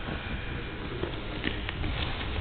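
Background noise of a gym hall with a few light knocks and rustles as grapplers shift their bodies on the mat.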